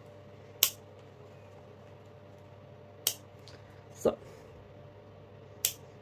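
Scissors snipping through orchid roots, cutting away the bad ones: three sharp snips about two and a half seconds apart.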